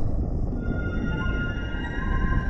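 Cinematic intro music for a logo animation: a dense low rumble, with several steady held tones coming in about half a second in.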